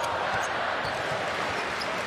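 Basketball dribbled on a hardwood arena court, over a steady wash of arena crowd noise.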